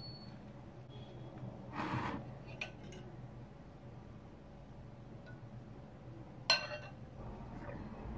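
A glass mixing bowl and metal fork handled while beaten egg is poured into a loaf pan: mostly quiet, with a soft rustle about two seconds in and one sharp, ringing clink of glass about three quarters of the way through.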